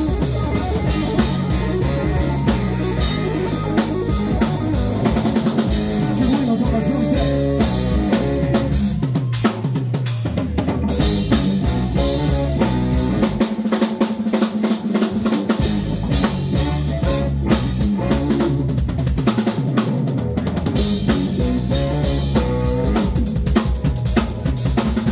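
Live funk band playing an instrumental passage, drum kit to the fore with bass, guitars, keyboard and saxophones. The low bass end drops out for a couple of seconds about halfway through, then the groove comes back in.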